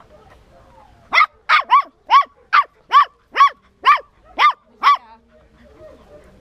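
A puppy barking: about ten short, high-pitched yaps in quick succession, starting about a second in and lasting some four seconds.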